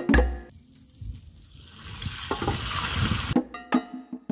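Fish deep-frying in hot coconut oil in a wok, sizzling and growing louder about halfway through. Percussive background music plays at the start and comes back near the end.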